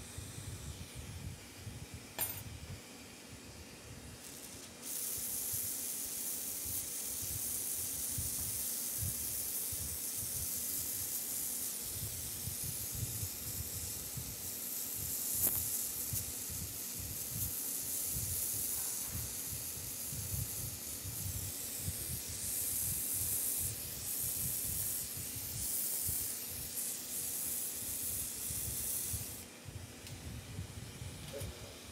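Glassworking bench torch burning with a steady hiss and low rumble as borosilicate glass is heated in the flame. A louder high hiss comes in suddenly about five seconds in and cuts off just before the end, and there is a single sharp click about two seconds in.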